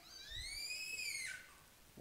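A baby's single high-pitched squeal that rises and then falls in pitch, lasting just over a second.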